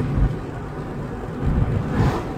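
Low, steady rumble of engine and road noise inside a moving car's cabin.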